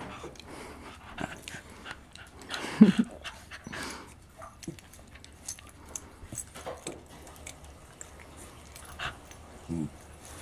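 A senior Shiba Inu and a puppy play-fighting: short low growls and scuffling on the blanket, with the loudest growl about three seconds in and another just before the end.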